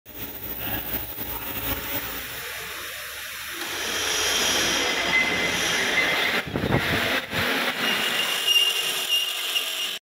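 Metalworking shop noise: arc-welding crackle first, then louder rasping of metal being worked in a bench vise. Two sharp knocks come about six and a half and seven seconds in, and a thin steady whine runs near the end.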